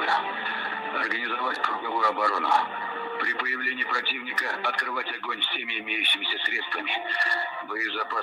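Continuous speech over a narrow, radio-like line, with few words picked out clearly.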